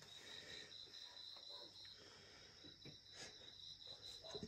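Faint chirping of night insects: a quick, high pulsing note, several pulses a second, that pauses briefly near the middle and starts again over a steady high hiss.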